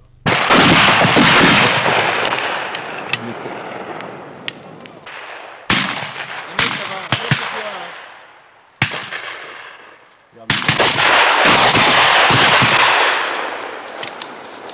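Shotguns firing at ducks in flight. A dense volley of shots starts just after the opening, single shots follow scattered through the middle, and a second heavy barrage comes about ten seconds in.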